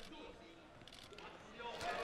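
Quiet gym room tone with faint, indistinct voices in the background and a few light scuffs.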